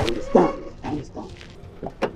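A few short whimper-like vocal cries, each falling in pitch, the first and loudest about a third of a second in and the rest fainter.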